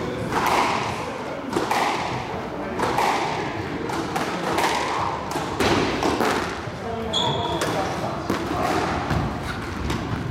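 A squash ball struck by racquets and hitting the court walls and floor: repeated sharp knocks echoing around the court, with a short high shoe squeak on the wooden floor about seven seconds in.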